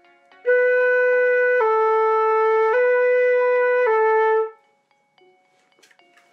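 Concert flute playing B natural and A natural back and forth: four held notes of about a second each, B–A–B–A, joined on one unbroken airstream, then fading away.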